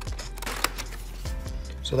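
Scissors snipping through stiff printed paper: a few sharp snips, the loudest just over half a second in.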